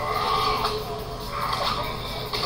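A man yelling on a martial-arts film soundtrack played back through speakers: a long cry, then a second, shorter one about a second and a half in.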